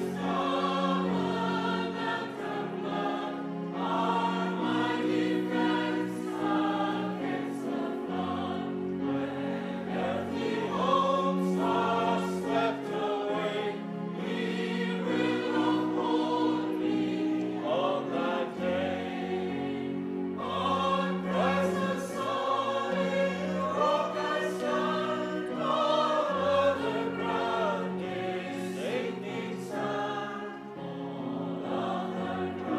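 Church congregation singing a hymn together over sustained accompanying chords, moving from the end of one verse into the chorus.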